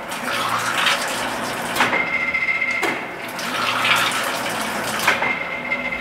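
Cyril Bath 150-ton mechanical press brake running through its stroke twice. Each stroke is a swelling hiss of air from its air-tripped clutch and brake, ending in a sharp click, over the steady hum and whine of the running machine.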